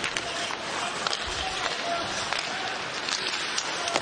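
Ice hockey arena sound during live play: a steady crowd murmur with a few faint clicks of sticks and puck.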